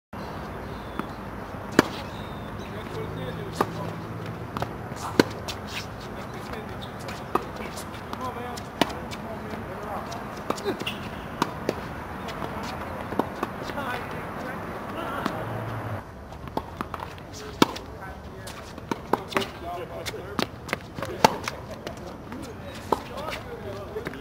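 Tennis rally on a hard court: sharp pops of the ball coming off racket strings and bouncing on the court, one every second or two.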